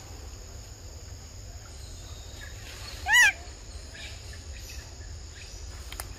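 One short, high animal call about halfway through, rising and then falling in pitch. Behind it are a steady low rumble and a faint high hum.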